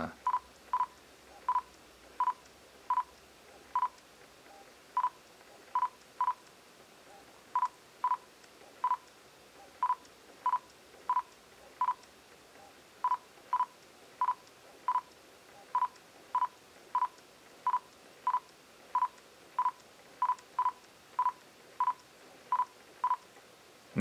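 Nikon Z mirrorless camera's focus-confirmation beep: short high-pitched beeps, often in quick pairs, sounding every half second to a second as autofocus with a NIKKOR Z 85mm f/1.8 S lens locks again and again as focus shifts between near and far subjects. Each beep marks focus being acquired; the lens's stepping-motor drive itself is near-silent.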